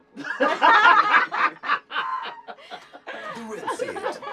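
People laughing, a loud burst in the first second and a half trailing off into softer chuckles.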